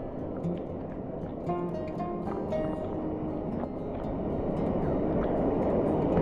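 Background music with short held notes, over the rushing noise of a waterfall and the pool's water, which grows louder in the last couple of seconds.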